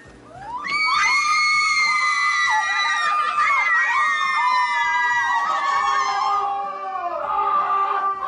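Several women screaming together in long, high-pitched shrieks of delight. The screams rise in about half a second in, hold for several seconds, then fall lower near the end.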